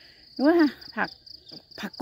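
Insects chirping in a steady, high, pulsing trill, with a few brief words of a woman's speech over it.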